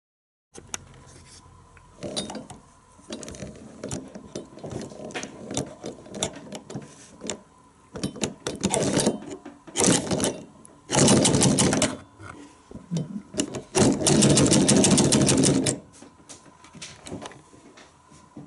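Hand-cranked 1900 Robert W. Paul 'Century' 35mm projector mechanism with a three-slot Geneva-type intermittent wheel, clattering rapidly while it runs. It goes in several short runs with loose clicks and knocks between them. The longest and loudest run comes near the end.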